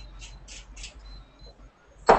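Pepper being added to the dish: three or four short rasping strokes about a third of a second apart, then faint room tone.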